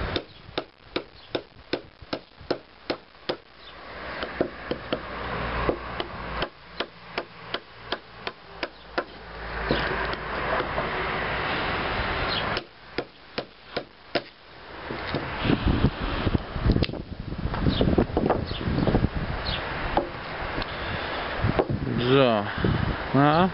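A Cherusker Anduranz folding knife chopping into a thin wooden stick as a chopping test, making a series of sharp chops. They come about three a second at first, then in short runs, and fall thicker and harder near the end. A few seconds of rustling noise come in the middle.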